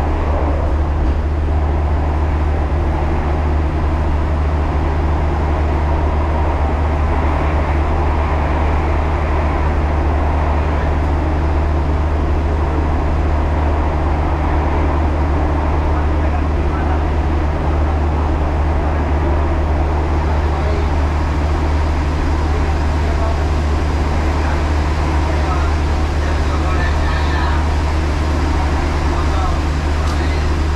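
Steady low engine drone inside a moving vehicle's cabin, even in level throughout, with faint voices in the background.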